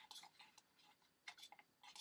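Faint, light clicks of a plastic spoon against a plastic cup of epoxy resin, a few in quick succession near the start and again past the middle.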